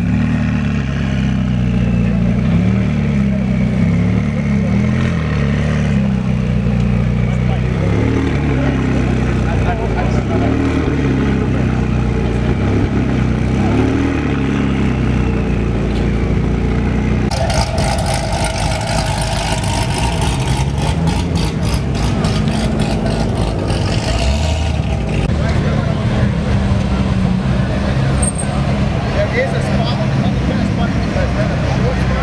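A McLaren 675LT's twin-turbo V8 idling steadily, with people talking around it. A little past halfway the sound changes abruptly, and a rapid clicking runs for several seconds.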